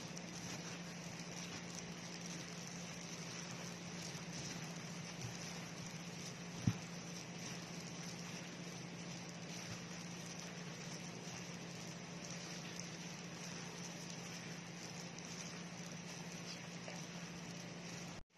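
Plastic-gloved hands rubbing and mixing glutinous rice flour, sugar and mashed sweet potato in a bowl: a soft, even rustling over a steady low hum. One sharp knock about a third of the way in.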